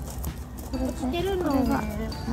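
A voice singing a gliding melody over background music, the line sliding down in pitch near the end. Light crunching steps on shell-strewn gravel run underneath.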